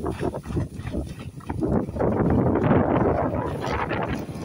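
A reindeer team pulling a wooden sled through tall tundra grass: irregular rustling and thudding from the hooves and the runners dragging through the grass.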